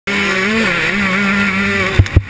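KTM 125 two-stroke motocross bike engine running hard at high revs, a steady note with small dips and rises in pitch, that cuts off suddenly at the end.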